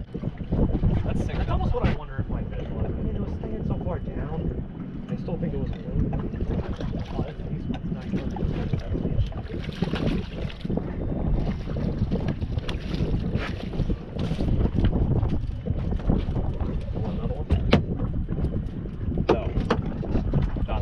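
Wind buffeting the microphone aboard a small open fishing boat on the water, a steady fluctuating rumble, with a few sharp clicks.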